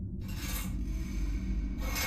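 Curtains yanked open, sliding along their rod: a short scrape just after the start and a longer, louder one near the end, over a low drone.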